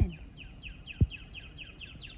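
A small bird chirping in the background, a quick steady run of short, high, falling notes, about six a second. There is one low thump about a second in.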